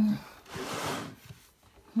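A woman's short breathy exhale, like a sigh, starting about half a second in and lasting under a second, just after her speech trails off.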